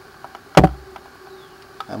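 A single sharp knock about half a second in, preceded by two faint clicks, from a plastic toy blaster being handled and turned over in the hand.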